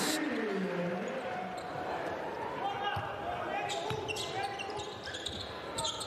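Basketball arena sound in a large hall: a steady crowd murmur with voices calling out and a few sharp ball bounces on the court.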